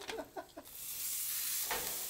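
A few short clicks from metal tongs, then a sauced rack of ribs sizzling on a hot gas grill grate, starting about half a second in as a steady hiss.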